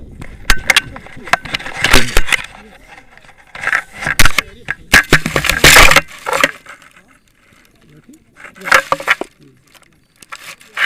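Tandem paraglider landing in long grass. The rushing wind on the microphone stops, and a burst of knocks, rustles and scrapes follows as the harness and bodies hit the ground and slide through the grass, with a voice or two mixed in. After a lull, another short cluster of rustling comes near the end.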